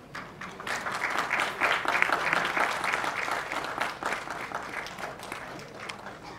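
Audience applauding: the clapping swells up about half a second in, holds strong for a few seconds, then tapers off near the end.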